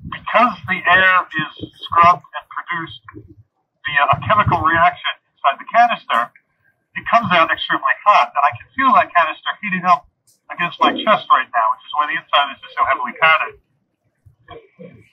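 A man's voice talking through a full-face breathing mask and its small battery-powered voice amplifier, sounding thin and telephone-like, in phrases with short pauses.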